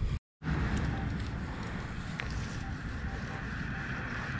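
Steady outdoor background rumble and hiss, with a few faint, short beeps from a Minelab Equinox 800 metal detector as its coil is swept over grass. The sound drops out completely for a moment just after the start.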